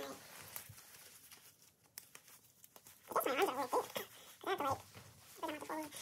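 Faint rustling of a nylon jacket as it is handled, then, from about halfway through, three bursts of a wordless voice with a wavering, sliding pitch, like humming or sing-song vocalizing.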